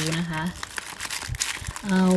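Clear plastic air-column cushion packaging around a laptop fan crinkling as a hand grips and shifts it: a run of small crackles in the middle, between short bits of a woman's voice.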